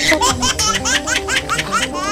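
A woman giggling in a quick, even run of short high bursts, about seven a second, over background music.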